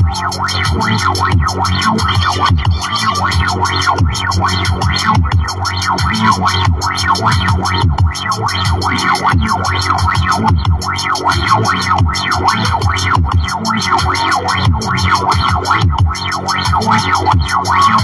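Guitar music played through effects, with some distortion, over a steady rhythm and with sliding low notes.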